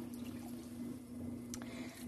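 Electric potter's wheel running with a low steady hum, with faint wet sounds of hands working the spinning clay, and a small click about one and a half seconds in.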